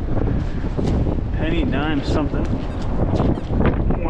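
Strong wind buffeting the microphone, with a sand scoop digging into wet sand in short scrapes and knocks. A brief wavering, pitched sound rises and falls about a second and a half in.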